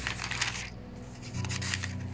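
Thin Bible pages being turned by hand: a crisp, crackly paper rustle made of many small clicks, busiest in the first second and thinning out after.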